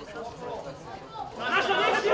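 Indistinct chatter of several voices, getting louder about one and a half seconds in.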